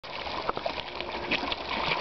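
Many fish splashing and thrashing at the water surface in a feeding frenzy over bread, a busy run of small overlapping splashes.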